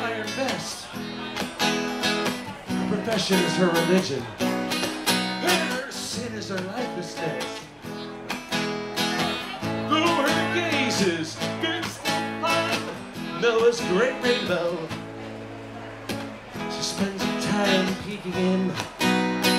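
Two acoustic guitars played live, strummed chords with a picked lead line over them: an instrumental break between sung verses.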